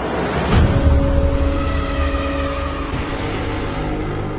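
Cinematic logo sting: a deep rumbling whoosh that swells from the cut, with a sharp hit about half a second in, then held droning tones over the rumble.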